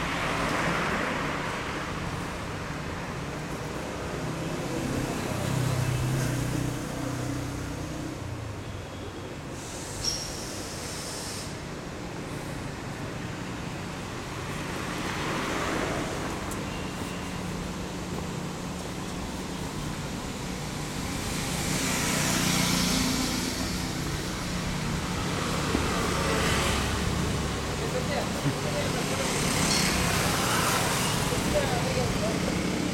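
Light road traffic: motor vehicles passing one at a time, each a swell of engine and tyre noise, about five passes, with a motorcycle going by near the end.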